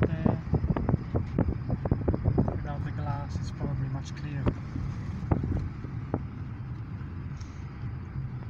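A car's engine and road noise heard from inside the cabin while driving, a steady low hum, with a run of sharp clicks and knocks over the first five seconds or so.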